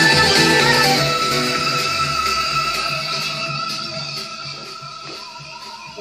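Music with guitar and strings playing from a television, getting steadily quieter as the volume is turned down.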